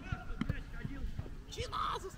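Men's voices talking quietly on the pitch, with a few light knocks.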